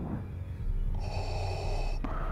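Darth Vader's mechanical respirator breathing from the film soundtrack: a hissing breath starts about halfway through, over a low steady hum.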